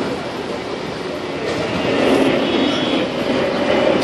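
Loud, steady rumble of heavy city street noise that swells about two seconds in, with a faint high squeal near the middle.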